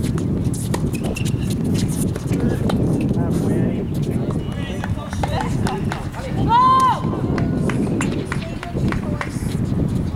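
Doubles tennis on an outdoor hard court: sharp clicks of racket strikes and footsteps, with players' voices. About six and a half seconds in, a loud high call rises and falls for about half a second.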